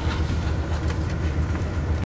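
Cabin running noise of a JR Hokkaido KiHa 183 series diesel express train: a steady low drone with an even rumble of wheels on rail.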